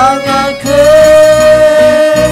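Band playing a Khasi gospel song with sung vocals. A sung note slides upward at the start, then one long note is held over guitar and bass accompaniment.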